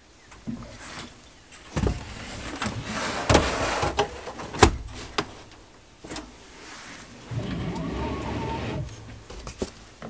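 Knocks and scraping of a board being handled inside an xTool D1 Pro laser engraver's enclosure, with three sharp knocks in the first five seconds. Then the laser's motors whir steadily for about a second and a half as the laser head travels along the gantry.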